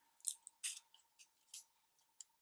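Faint, brief rustles and crinkles of paper and cardstock being handled, about four short ones over two seconds.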